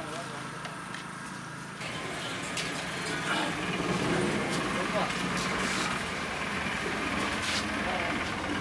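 Street ambience: people chattering, with a vehicle engine running in the background. It gets louder and busier about two seconds in.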